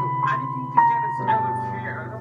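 A digital piano played as a duet: a treble melody stepping downward one note at a time, a new, slightly lower note about every half second, over a low sustained bass.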